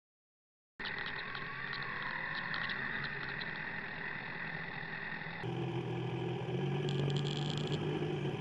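After a second of dead silence, a Kawasaki Z1000's inline-four engine running steadily at low revs. About five and a half seconds in, the sound cuts to a fuller, clearer engine note.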